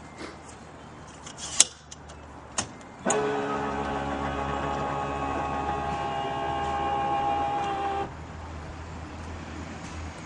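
Two sharp clicks, then a small electric motor whirring at a steady pitch for about five seconds before stopping abruptly, with a low hum underneath.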